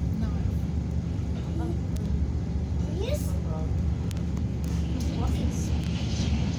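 Steady low rumble of an EKr1 Intercity+ electric train running at speed, heard from inside the passenger car, with faint voices over it.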